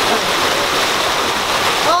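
Fast-flowing mountain stream rushing steadily over rocks in a stone channel.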